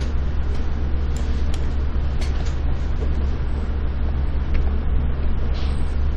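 Steady low hum with a hiss of background noise, and a few faint clicks about one to two seconds in.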